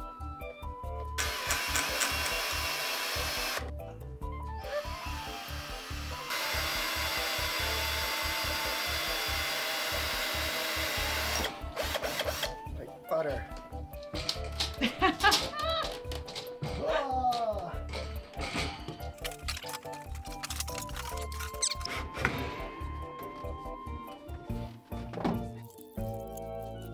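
Power tool running in two long, steady stretches of a few seconds each, followed by scattered knocks and rattles as a metal wire shelving unit is handled, all over background music.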